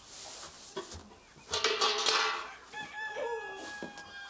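A rooster crowing once. The call starts about a second and a half in, is loudest at first, and then holds a long steady note until near the end.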